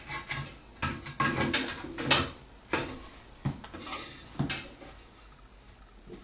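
Small clicks and knocks of plastic toilet parts being handled against a porcelain toilet tank as a new flush valve is fitted into the tank's outlet hole. The knocks thin out and grow quieter near the end.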